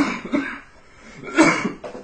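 A person coughing in a small room, two coughs about a second and a half apart.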